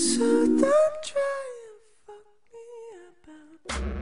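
A voice humming a slow, wavering tune, much quieter after about two seconds. A short dull thump comes just before the end.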